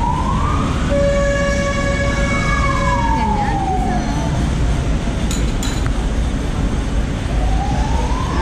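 A siren wailing, its pitch sweeping up, holding a steady tone for about two seconds, then falling, and starting to rise again near the end, over a steady low background rumble.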